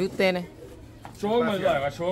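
A man's voice speaking in two short stretches with a pause between, over domestic pigeons cooing from the rooftop loft.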